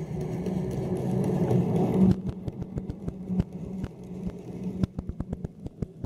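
TigerShark robotic pool cleaner heard underwater: its motor hums steadily, with a rushing sound over the first two seconds that stops abruptly. After that come irregular sharp clicks and ticks.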